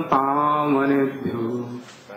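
A man chanting Sanskrit invocation prayers in a drawn-out, melodic recitation, holding each syllable on a slowly falling pitch, with a short breath near the end.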